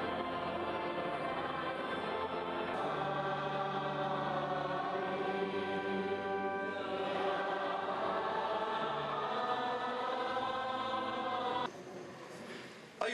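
A church choir singing a hymn in long, held chords that change every few seconds, cutting off abruptly near the end.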